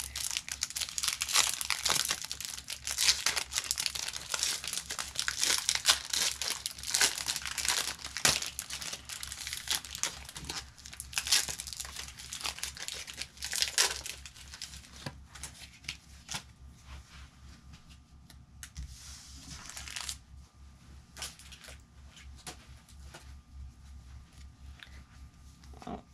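Foil Pokémon booster pack wrapper being torn open and crinkled, dense and crackly for about the first fourteen seconds. After that come quieter, scattered rustles and light taps as the cards are handled.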